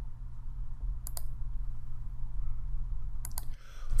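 Computer mouse clicks: a quick pair about a second in and another pair near the end, over a low steady hum.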